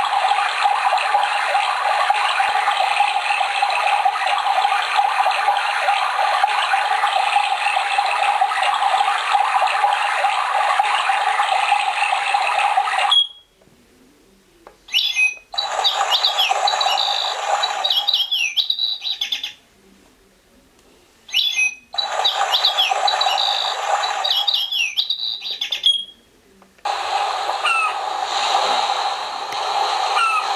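Built-in nature-sound tracks of a colour-changing sphere alarm clock, played through its small speaker. A steady rushing sound like running water cuts off about 13 seconds in. After a brief pause a track of bird chirps over a rushing background starts, stops and restarts twice with the button presses, and another track begins about three seconds before the end.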